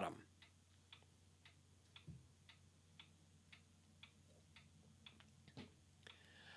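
Near silence: faint, evenly spaced ticking, about two ticks a second, over a low steady hum.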